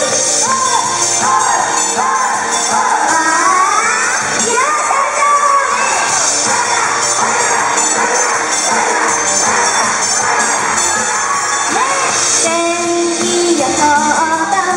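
Upbeat J-pop idol song played over a PA system, with a group of young women singing along live into microphones, and the crowd cheering and calling out over the music.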